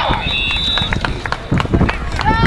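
A referee's whistle blown once, a steady high note lasting about a second, stopping the play after the tackle; spectators' voices carry on over it.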